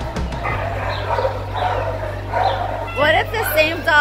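Dogs barking in shelter kennels, several rough barks a second or so apart, echoing, over a steady low hum.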